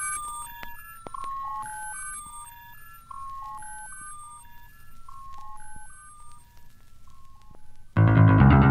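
A quiet melody of clean, short electronic beeping notes, a few a second, stepping up and down in a repeating pattern like an alarm-clock or toy tune, played as a track's outro.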